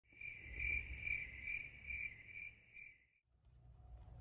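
Insect chirping: a steady high trill that pulses about twice a second over a faint low rumble, cutting off about three seconds in.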